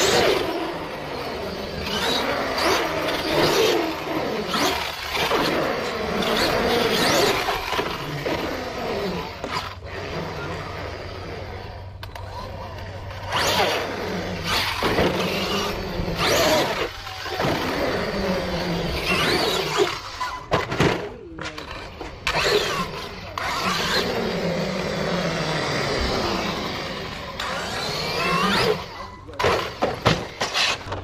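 Arrma Outcast 8S RC truck's brushless electric motor whining up and down in pitch as it speeds up and slows. Its tyres run on concrete, with repeated sharp knocks and thuds from landings and hits.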